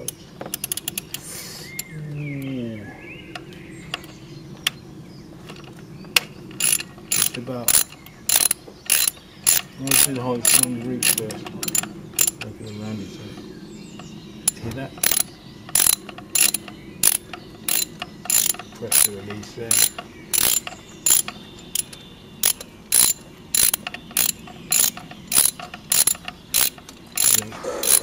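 A hand ratchet clicking in short back-and-forth strokes, about two a second, as a small Torx screw is worked loose in a tight spot on the engine. Quieter tool-handling sounds come first, and the clicking starts about six seconds in.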